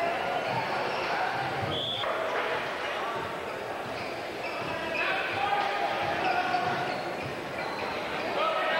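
Basketball game in a gym: a basketball bouncing on the hardwood floor under the steady chatter of crowd and player voices, with a brief high-pitched tone about two seconds in.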